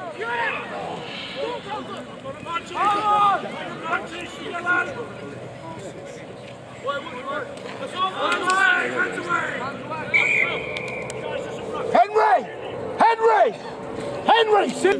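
Players and sideline spectators shouting across an outdoor rugby pitch. Partway through, a referee's whistle sounds once in a short steady blast, followed by a burst of louder shouting.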